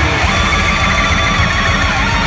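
Metalcore band recording: loud, dense distorted electric guitars playing over a fast low rhythm.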